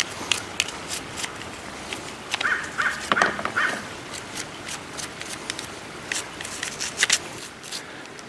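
A toothbrush scrubbing paint residue from the red plastic tip guard of an airless spray gun, wet with rinse water, in a run of short, irregular scratching strokes.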